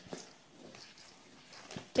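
Faint rustling and squishing of a hand mixing dry oats, coconut and cacao into a sticky peanut butter and honey mix in a metal bowl.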